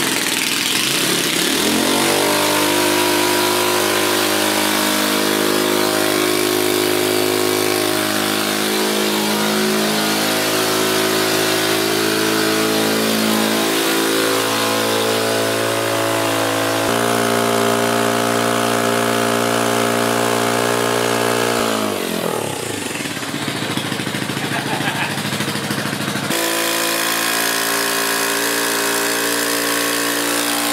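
Small turbocharged dirt bike engine in a Power Wheels Barbie Mustang, revving up and held at high, steady revs while the rear tyres spin in place on concrete in a burnout. Past twenty seconds the revs fall away, then the engine settles steady again.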